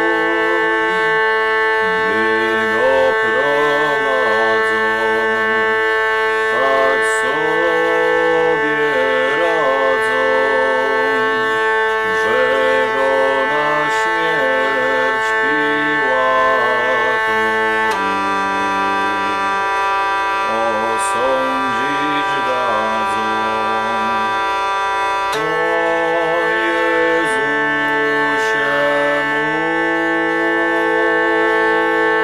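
Hurdy-gurdy playing an ornamented melody over its continuous drone. The drone changes pitch about eighteen seconds in and changes back about seven seconds later.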